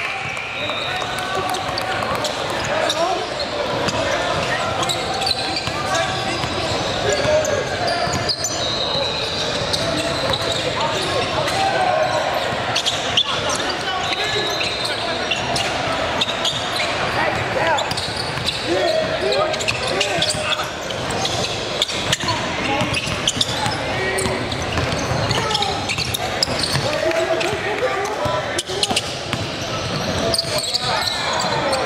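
Basketball being dribbled and bouncing on a hardwood gym floor, repeated sharp knocks, under a steady mix of players' and spectators' voices echoing in a large hall.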